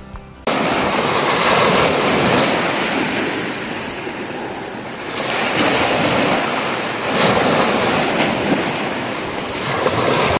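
Surf washing up on a sandy beach: a loud, steady rush of water that starts abruptly about half a second in and swells and eases a few times. A run of faint high chirps sounds through the middle.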